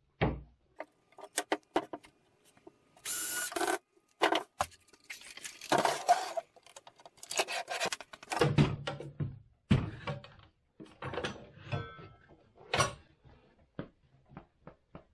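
Irregular knocks, bumps and scrapes of wood and tools being handled on a workbench, with a short burst of noise lasting under a second about three seconds in.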